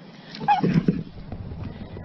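A dog gives a short, excited whine about half a second in, when a ball is offered, followed by a second or so of low rumbling noise.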